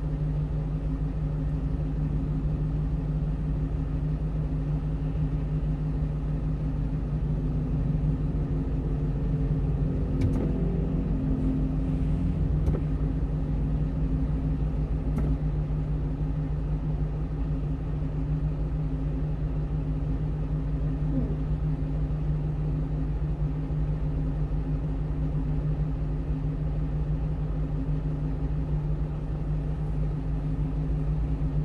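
A 1-ton truck's engine idling steadily, heard from inside the cab while stopped in traffic, with a few faint clicks around the middle.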